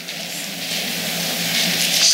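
Congregation applauding, the clapping growing louder.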